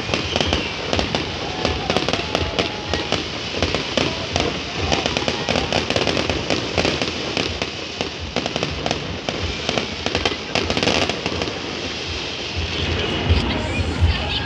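Aerial fireworks going off: a dense, continuous run of sharp pops and crackles from bursting shells and crackling stars.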